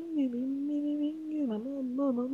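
Isolated a cappella lead vocal, a male singer holding one long sung note with no instruments, dipping briefly in pitch about one and a half seconds in.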